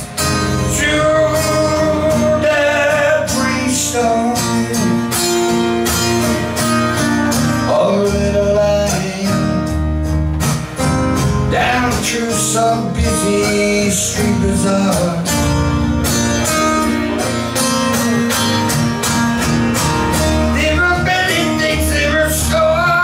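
Acoustic guitar strummed steadily through a PA, with a man singing long, wavering notes over it at times.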